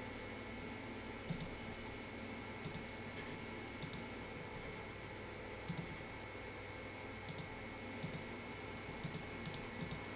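Computer mouse buttons clicking now and then, about a dozen clicks, several in quick pairs and more of them near the end, over a faint steady hum.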